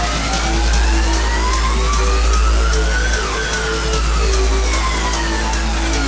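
Electronic music: a synth sweep rises in pitch for about three seconds and then falls again, over a steady bass, a repeating note pattern and regular high ticks.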